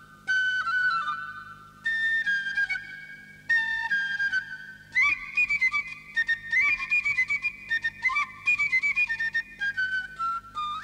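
A flute playing a short, high tune. It opens with three held phrases, each sliding down at its end, and from about halfway it moves higher into a quicker run of short notes.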